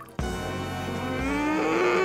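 A cartoon character's long, drawn-out vocal sound, slowly rising in pitch, over background music.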